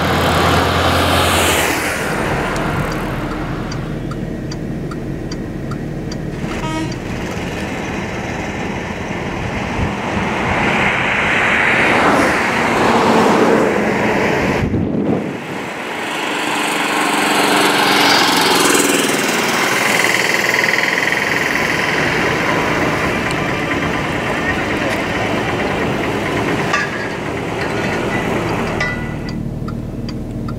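Roadside traffic noise: passing vehicles with occasional horn toots, mixed with indistinct voices.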